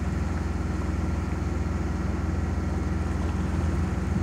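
A sailboat's engine running steadily under power, with an even low pulsing drone that does not change.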